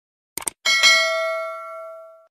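Two quick mouse-click sound effects, then a notification-bell chime sound effect that is struck twice in quick succession and rings out, fading away.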